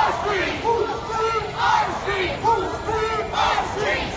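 Crowd of marching protesters shouting, many loud voices overlapping without a break.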